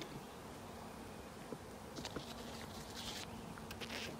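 Honeybees buzzing around the hives, a faint steady hum that grows a little clearer about halfway through, with a few light clicks and rustles.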